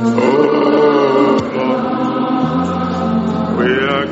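Choir singing a gospel praise song, with long held notes over a steady sustained bass line.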